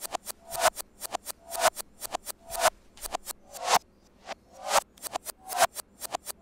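Teenage Engineering OP-Z playing a looped drum-sample beat with the percussion sounds reversed. About once a second a sound swells up and cuts off abruptly, with short clicks between.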